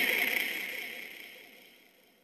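A hardstyle track's sound dying away steadily to silence, a fading tail leading into a break in the music.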